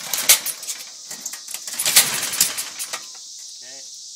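Toro riding mower's V70 vertical-shaft engine being pull-started from cold: the recoil starter is yanked twice, cranking the engine in a short clattering burst, then a longer one about a second later as the engine fires.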